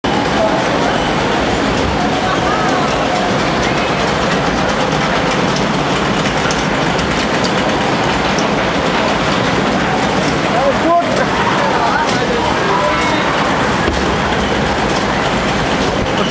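Log flume water rushing and churning in the trough around the log boat, a steady, loud wash.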